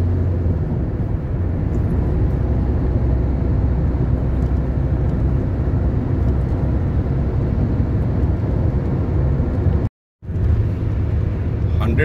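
Steady low drone of road and engine noise heard inside a car cabin at expressway speed. About ten seconds in, the sound drops out to silence for a moment, then resumes.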